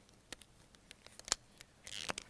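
Faint plastic clicks of whiteboard-style markers and their caps being handled, about six separate clicks, the loudest about a second and a third in.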